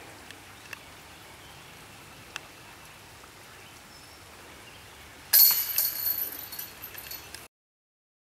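A putted disc strikes a disc golf basket about five seconds in, setting its hanging steel chains jangling for about two seconds before the sound cuts off suddenly.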